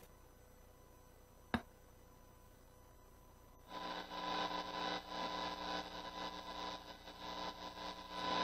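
A single sharp click about a second and a half in, then from about halfway a steady hum and hiss with a wavering level from a distorted electric guitar amplifier's live signal, waiting for the recording to start.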